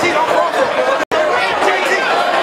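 Boxing crowd in a hall, many voices shouting and talking over one another as a fighter goes down. The sound cuts out for an instant about a second in.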